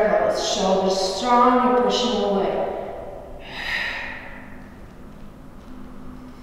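A woman's voice for the first two and a half seconds, which the transcript did not pick up as words, then a single breath out about three and a half seconds in, while she holds a backbend stretch on the floor.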